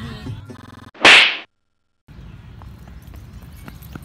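A single loud, sharp slap across the face about a second in.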